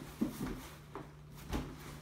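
Cardboard boot box handled against an open cardboard shipping carton as it is lifted out and turned over: a few short knocks and scrapes of cardboard, the sharpest a moment in and another about one and a half seconds in, over a low steady hum.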